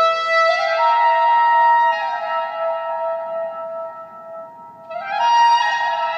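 Solo soprano saxophone improvising unaccompanied in a large stone church. It holds a note, runs quickly up to a higher sustained note, sinks to a softer, fading passage, then climbs again in another quick rising run near the end.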